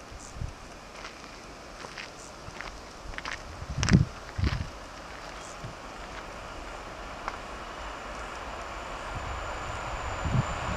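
A distant train approaching on an electrified main line: a soft rushing noise that grows steadily louder through the second half, with a thin high whine coming in near the end. Earlier, a few close knocks and rustles, the loudest about four seconds in.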